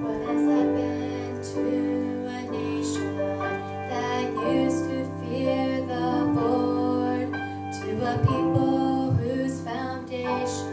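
A young woman singing a gospel song solo over piano accompaniment.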